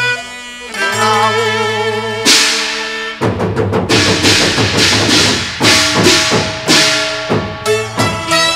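Cantonese opera ensemble: a melodic instrumental phrase, then about two seconds in a loud cymbal crash opens a run of repeated gong-and-cymbal strikes from the percussion section, each ringing on.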